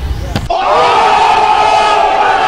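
A crowd of people screaming together, all at once, starting suddenly about half a second in and holding loud and steady.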